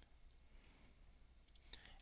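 Near silence with low room hum, and a few faint computer-mouse clicks near the end.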